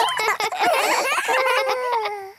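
Several cartoon children's voices laughing and giggling together, overlapping.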